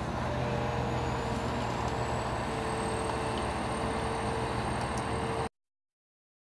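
Komatsu PC410LC-5 excavator's diesel engine running steadily, a low drone with a steady hum and a faint high whine. It cuts off suddenly about five and a half seconds in.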